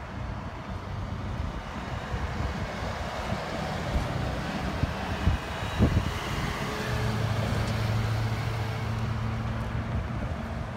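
Vehicles driving past on a road, engine and tyre noise, with an ambulance passing about halfway through and a steady low engine hum from a passing SUV in the last few seconds. Wind buffets the microphone.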